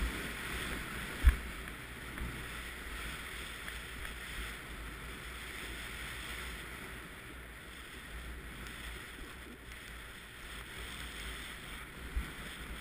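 Steady hiss of deep powder snow sliding under a rider descending through trees, with low wind rumble on the microphone. One sharp thump about a second and a half in, and the hiss eases a little in the second half.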